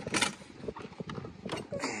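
A few light, irregular knocks and clunks of hard plastic cases and tools being handled in a toolbox drawer, the sharpest one just after the start.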